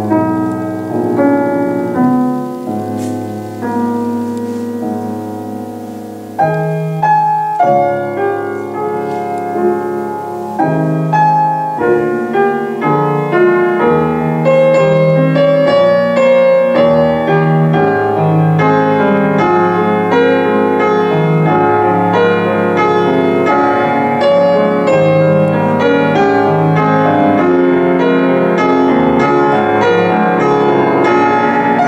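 Grand piano played solo. It starts with slower notes that die away and grow softer, then comes a sudden louder entry about six seconds in. From about halfway it turns into dense, fast passagework at a steady loud level.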